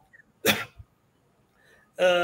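A single short, sharp breath noise from a man, about half a second in, followed by a faint low thump.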